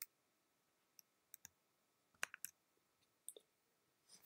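Faint, scattered clicks from a computer keyboard and mouse, about nine in all, some in quick pairs, over near-silent room tone.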